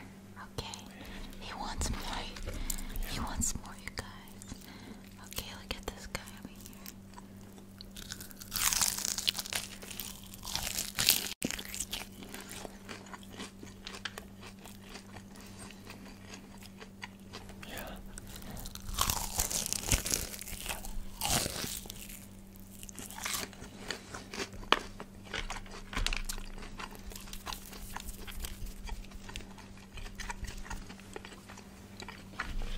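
Fried chicken being bitten and chewed close to a microphone: crisp crunching of the breaded coating, loudest in two stretches about 9 and 20 seconds in, over a faint steady hum.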